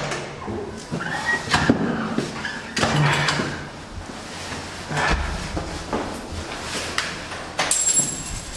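An apartment front door being opened and shut, with knocks, clothing and bag rustling, and footsteps. A short high electronic tone sounds near the end.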